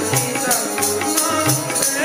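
Sikh kirtan: a harmonium plays the melody while the tabla keeps a steady rhythm, with deep bass-drum strokes from the bayan recurring through it.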